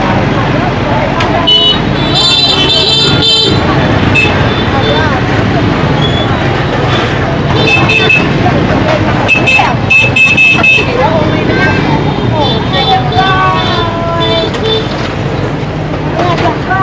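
Busy market street with motor vehicles: an engine runs steadily underneath and short horn beeps sound several times, among the voices of people nearby.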